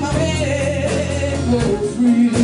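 A live jump blues band playing, with a woman singing a held, wavering note into the microphone over the band's steady bass line.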